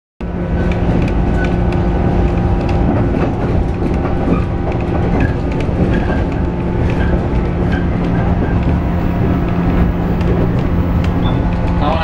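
JR Sanyo Main Line train running at speed, heard from inside the carriage: a steady rumble of wheels on the rails with a constant low hum and scattered light clicks.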